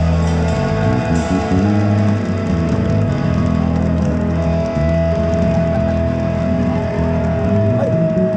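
Live rock band playing an instrumental passage, guitar over bass guitar. A long held note comes in about halfway through.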